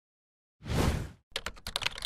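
Computer-keyboard typing sound effect: a rapid run of sharp key clicks starting about 1.3 s in. It follows a short, loud swoosh about half a second in.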